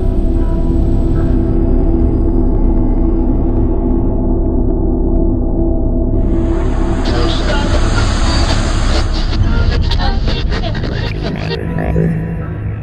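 Cinematic intro music: a sustained low drone with held tones, a hissing whoosh swelling in about halfway through, then a rapid run of sharp clicks and hits near the end.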